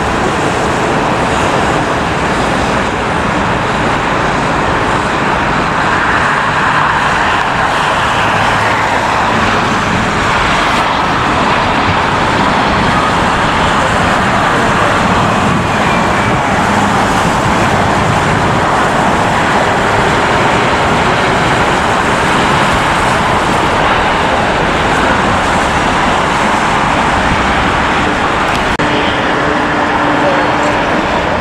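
Loud, steady roar of airliner jet engines during approach and landing, with little change in level.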